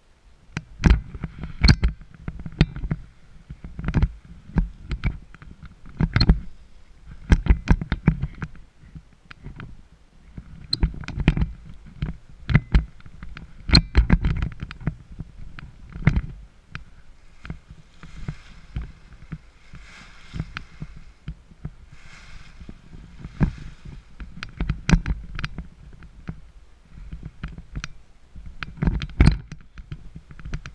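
Irregular knocks, thumps and rustles close to a head-mounted camera as a paraglider pilot walks over the launch matting and handles the wing and its lines. A softer rustling hiss comes midway.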